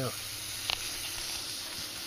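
Pressurised nitrogen escaping through a bubble-solution-coated brass flare fitting on a mini-split line set, giving a steady sizzling hiss of frothing bubbles. It is the sign of a refrigerant-line leak at the flare nut, which turns out to be a broken flare. One brief sharp tick comes about 0.7 s in.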